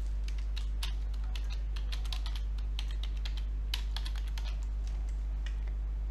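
Typing on a computer keyboard: a run of irregular key clicks, over a steady low hum.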